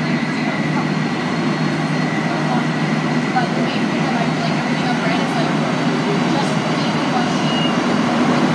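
Montreal Metro Azur (MPM-10) rubber-tyred train heard from inside the car while running: a steady rumble and rush of noise. A thin high steady whine fades out about two seconds in.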